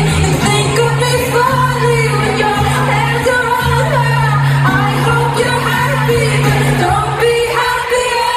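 A pop ballad performed live in a large hall: a female lead voice singing over acoustic guitar accompaniment. The sustained low notes underneath drop out about seven seconds in.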